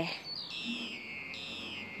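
A bird calling outdoors: two drawn-out, high whistled notes, each falling in pitch over about half a second.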